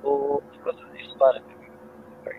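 Broken-up, garbled voice coming through a faulty microphone over a video-call link: a short buzzy burst at the start, then a couple of clipped fragments of speech over a steady electrical hum. This is the mic problem that leaves the voice unclear.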